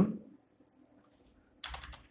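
Computer keyboard keystrokes: a short quick run of key presses near the end, as code starts to be typed into the editor.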